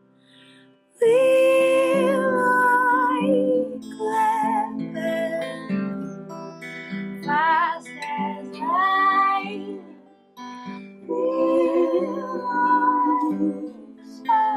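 Live folk band playing guitars, with a high, wavering melody line over the strumming. The music comes in about a second in and dips briefly near the ten-second mark.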